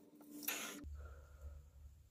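Hit from a glass water bong: a faint hiss of drawing air about half a second in, then a low, uneven bubbling rumble of the bong water.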